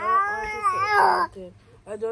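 An eight-month-old baby's long, high-pitched whining vocalisation, wavering up and down in pitch, that stops about a second in.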